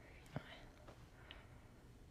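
Near silence with a faint breathy whisper and a small click about a third of a second in.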